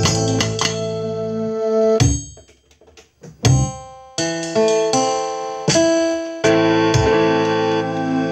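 Piano chords being played, each struck and held so that it rings on. About two seconds in, the sound dies away almost to silence for about a second before new chords are struck.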